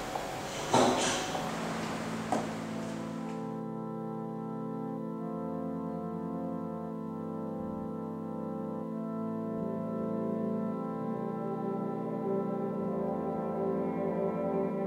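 A few sharp knocks over a noisy hiss come first. About three and a half seconds in, a keyboard starts playing long held, organ-like chords with a horn-like tone, the low notes shifting every two seconds or so.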